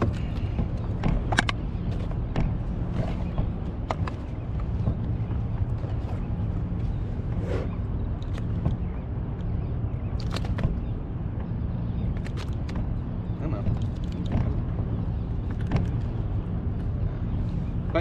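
Scattered small clicks and knocks of a fish being unhooked and handled on a plastic measuring board in a kayak, over a steady low rumble.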